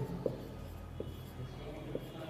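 Marker writing on a whiteboard: faint strokes with three light taps of the tip.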